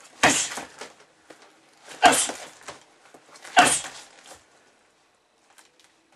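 Three hard gloved punches from the clinch landing on a grappling dummy hung on a heavy bag, each a loud slam, about two seconds and then a second and a half apart.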